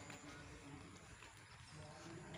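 Near silence: faint outdoor background with a few soft, irregular ticks.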